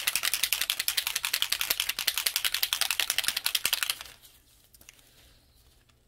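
A small bottle of pearl alcohol ink being shaken hard, the mixing ball inside clattering in a fast, even rattle that stops about four seconds in. The shaking mixes the pearl pigment, which settles at the bottom of the bottle.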